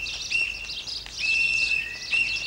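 A bird singing: a run of drawn-out notes held on one high pitch, each lasting up to about half a second, with short breaks between them and quick chirps above.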